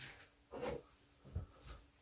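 Faint handling sounds: three soft knocks and rustles, the first about half a second in, with quiet room tone between them.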